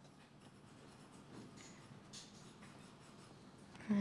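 Faint rustling of paper sheets being handled in a quiet room, with a voice starting right at the end.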